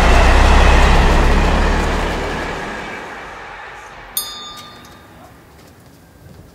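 A train passing close by: a low rumble and rushing noise, loudest at first and fading away over a few seconds. A brief high-pitched squeal about four seconds in.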